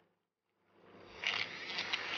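Silence for nearly the first second, then a battery-powered Aerolatte milk frother whirring as it whips a thin coffee mixture in a glass, with small splashing ticks.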